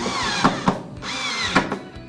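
Cordless drill/driver running a screw into a steel desk-leg bracket: two bursts of motor whine, each falling in pitch as the screw tightens, with sharp clicks as it seats.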